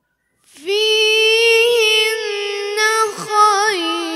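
A boy's voice in melodic Quran recitation (tilawa), starting about half a second in on one long held note, then sliding into quick ornamented turns of pitch near the end.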